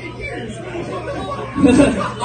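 Indistinct chatter of people talking, with a steady low hum underneath. A louder voice breaks in near the end.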